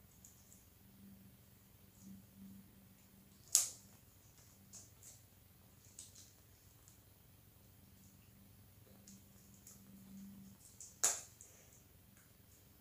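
Faint handling of a rubber balloon as its neck is stretched and wrapped around the fingers to tie it off, with scattered small clicks and two sharp snaps, one about three and a half seconds in and one near the end.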